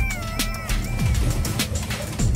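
Background music with a steady electronic beat and a high, sliding melodic line over it.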